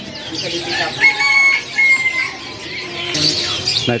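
Caged birds chirping, with one long drawn-out call, broken once, starting about a second in; short high chirps follow near the end.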